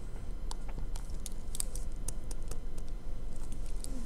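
Faint, irregular small clicks and taps of a stylus writing on a tablet screen, over a steady low hum.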